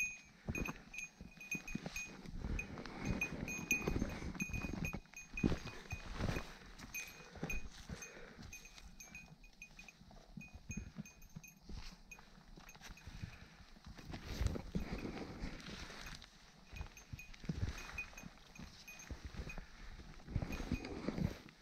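Footsteps crunching on dry leaf litter and brushing through branches during a steep scramble, with a small bell on a pack jingling rapidly in time with the movement.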